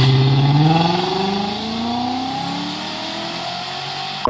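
Volkswagen Passat B5 W8 engine accelerating away, its note rising steadily in pitch and fading as the car pulls away.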